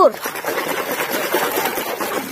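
Water splashing and sloshing as a muddy toy truck is swished and scrubbed by hand under water, a steady churning wash that eases slightly towards the end.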